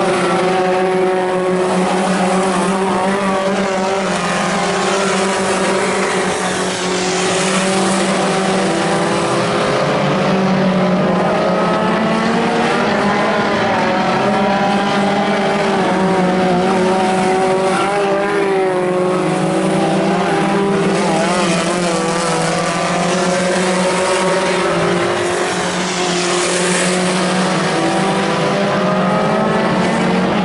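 Several Pony Stock race cars' four-cylinder engines running together on a dirt oval, their pitch rising and falling over and over as they accelerate down the straights and lift for the turns.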